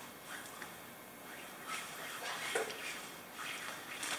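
Faint rustling and light clicks of cord being handled and knotted at a carabiner on a tarp ridgeline.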